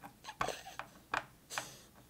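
A pink plastic Play-Doh mold knocked and pressed against a tabletop: a few short, sharp plastic clicks and knocks, meant to loosen the dough shape from the mold.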